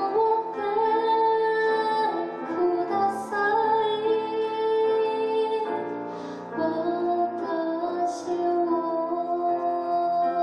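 Woman singing in Japanese while accompanying herself on a grand piano, her voice holding long notes over sustained piano chords, with a couple of brief hissing consonants.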